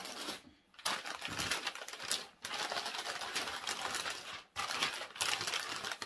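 Wrapping crinkling and rustling as a thrifted item is unwrapped, in three or four stretches with short pauses between.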